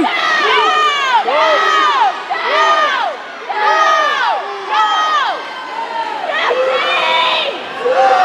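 A crowd of spectators yelling to cheer on racing swimmers: a string of loud overlapping shouts, each rising and falling in pitch, about one or two a second.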